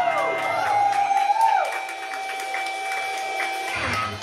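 Live rock band's electric guitars ringing out on a sustained closing chord, with whoops and cheering from the crowd over it; the music cuts off near the end.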